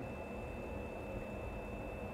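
Faint, steady rail-yard ambience: a low rumble with a thin, steady high-pitched tone over it.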